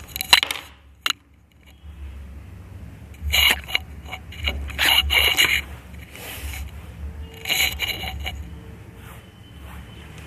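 Handling noises close to the microphone: a couple of sharp clicks, then bursts of scraping and rubbing about three, five and eight seconds in, over a faint steady low hum.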